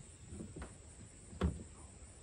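A single light knock on a plastic kayak about a second and a half in, with a few fainter knocks before it, as a person shifts in the seat with the paddle resting across the deck.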